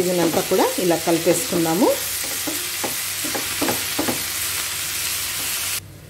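Shredded cabbage sizzling in a hot non-stick frying pan while it is stirred with a wooden spatula, the spatula scraping and tossing through it. The sizzle cuts off suddenly near the end.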